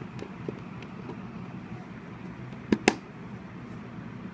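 Two sharp clicks about a fifth of a second apart near the end, over a steady low room hum: a cable plug being pushed into the DSC port of a FlySky TH9X radio transmitter, the connection that switches the transmitter on.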